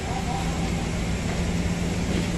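Forklift engine running steadily, with a low hum held throughout.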